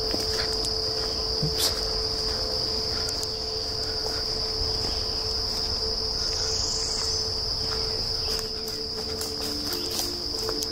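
Insect chorus in summer woodland, a steady unbroken high-pitched drone, with a fainter steady lower tone beneath it. Low rumble and a few scattered clicks from walking along the path.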